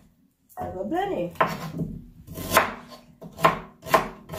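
Kitchen knife chopping fresh ginger root on a cutting board: a few sharp strikes about a second apart.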